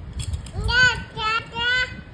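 A baby vocalizing: three short, high-pitched babbling calls in quick succession, the first one rising and falling in pitch.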